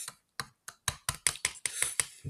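Crisp packet and tortilla chips being handled: a quick, irregular run of sharp crackles and clicks.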